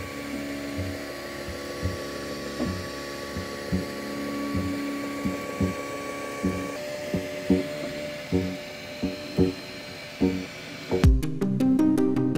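Ultimaker 2 3D printer running a print: its stepper motors give steady whining tones that shift in pitch partway through, with short low blips as the print head moves. Background music with a steady beat comes in about a second before the end.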